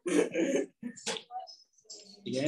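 A person's voice in short bursts, like throat clearing, loudest in the first half second and followed by a few brief, fainter sounds.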